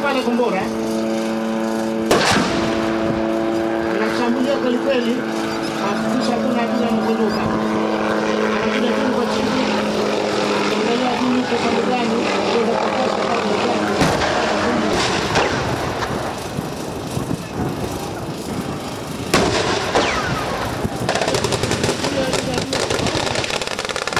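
Light military helicopter flying low, its engine giving a steady pitched whine that cuts off about fourteen seconds in, over intermittent explosions and gunfire: sharp blasts about two seconds in and again near fourteen, fifteen and nineteen seconds in.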